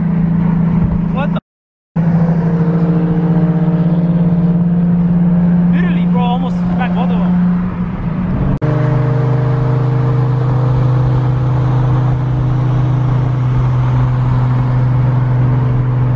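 Nissan 350Z's V6 heard from inside the cabin at highway cruise, a loud steady exhaust drone. About halfway through, the pitch drops suddenly to a lower steady drone, as with an upshift. A brief cut to silence comes about one and a half seconds in.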